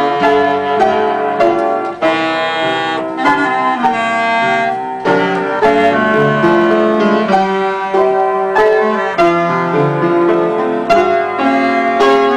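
Piano and clarinet playing a melody together, with held clarinet notes over struck piano chords.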